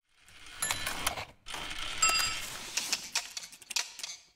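Mechanical clicking and ratcheting like a small clockwork mechanism, fading in, pausing briefly about a second and a half in, then running on with a couple of short metallic pings before it stops just after the end.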